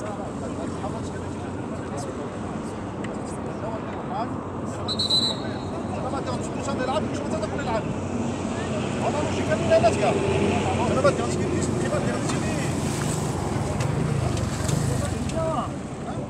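Scattered distant voices of players and onlookers calling out over a steady low rumble of wind on the microphone.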